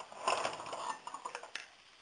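Steel lead screw clinking and rattling against the mini mill's saddle as it is dropped and settled into place: a click, then about a second of metallic clatter with a few small clicks.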